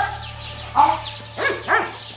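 A puppy barking three short times during play, over faint background birdsong.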